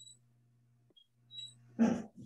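Near silence with a faint, steady low hum, then a short, loud voice-like sound near the end.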